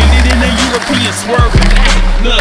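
Hip-hop music: a rap track with deep, sustained 808 bass notes over the beat.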